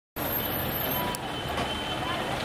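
Street traffic noise: a steady low rumble of vehicles, starting abruptly just after the beginning, with a thin high steady tone for about a second in the middle.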